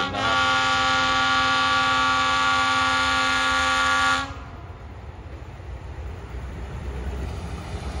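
Diesel locomotive's horn holding one long, steady blast that cuts off about four seconds in. After it comes the low rumble of the approaching train, growing louder.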